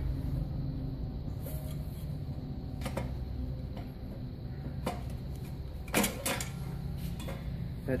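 Stainless-steel perforated drum of a capsule polisher being worked loose and lifted out of its metal case, with a few sharp metal knocks and clanks, the loudest about six seconds in, over a steady low hum.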